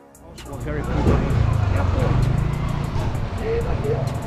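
A motor vehicle running close by: a low rumble that swells up over the first second and then holds steady. Underneath are background music with a steady beat and faint voices.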